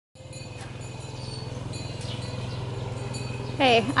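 A steady low hum with a fast, even pulse and a few faint high chirps above it; a woman starts speaking near the end.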